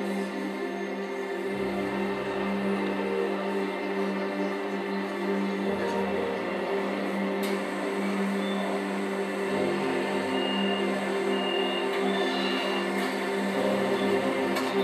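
Slow ambient electronic music of sustained synth chords, with deep bass notes coming in every few seconds and a few short high notes near the end. It is played back through a pair of DIY Coral two-way open-baffle speakers, a Coral Flat 8 full-range driver over a Coral 12-inch woofer in each, as a demonstration of how they sound.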